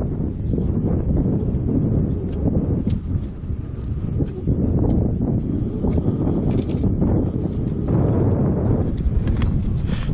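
Wind buffeting the microphone, a loud, steady low rumble, with occasional short clicks over it.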